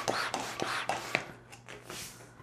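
A gray 260 latex twisting balloon being inflated almost all the way: a few airy rushes with rubbing and a sharp click, fading after about a second and a half.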